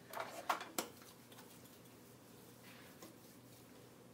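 Wall-mounted hand-sanitizer dispenser being pumped: a quick cluster of short clicks and squirts in the first second, followed by faint rustling.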